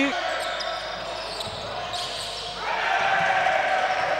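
Live game sound of an indoor basketball court in a large hall, ball bouncing amid the hall's general noise, with a steady tone coming in about two-thirds of the way through.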